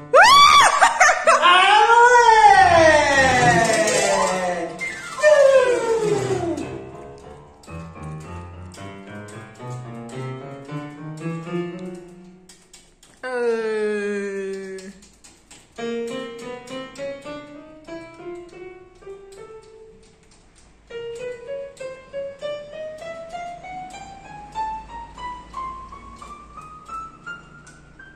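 Yamaha PSR-730 keyboard playing pitched notes: a loud sliding, wavering tone for the first six seconds or so, then single notes stepped up the keyboard key by key in several rising runs, the last a long climb. The keys are being tested one by one to find which ones sound after cleaning the contacts and reseating the flat cables, which had left keys silent.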